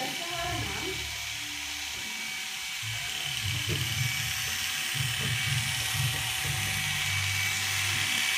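Corded electric hair clipper buzzing steadily as it shaves a boy's hair short at the sides and back, the buzz wavering as the blade runs through the hair.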